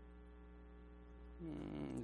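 Steady electrical mains hum, fairly quiet. A man's voice comes in near the end.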